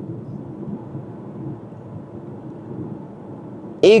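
Steady, even rumble of road and engine noise inside a moving car's cabin. A man's voice starts just before the end.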